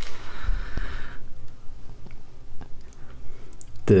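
Handling noise: a soft rustle for about the first second, then scattered small clicks and taps as a bare printed circuit board is turned over in the hands.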